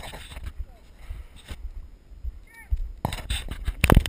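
Low rumble of wind on a head-mounted camera's microphone with faint distant voices. In the last second or so, loud rubbing and knocking as a hand handles the camera.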